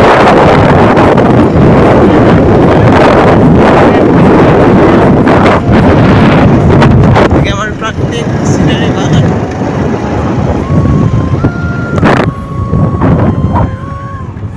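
Wind rushing over the microphone along with a vehicle running, loud and steady for the first half, then easing about eight seconds in. Near the end a few held tones step up and down in pitch.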